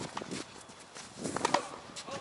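Scattered sharp knocks and taps on a hard tennis court as players move between points, with a cluster of them about one and a half seconds in.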